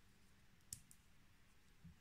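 Near silence broken by small handling sounds of crocheting with a thin metal crochet hook and long fingernails: one sharp click a little before halfway, and a soft low bump near the end.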